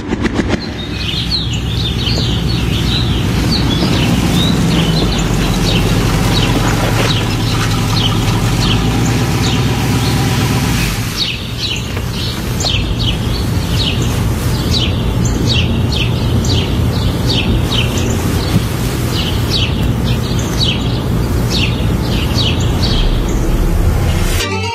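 Birds chirping in quick repeated calls over a steady low rumble.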